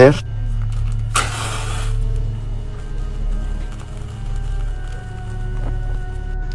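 Low droning background music, with a short hiss about a second in lasting under a second: a match struck on its box.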